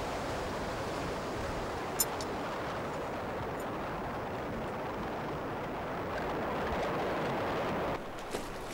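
A steady, even rushing hiss, like wind or running water, with a single short click about two seconds in and a slight swell near the end.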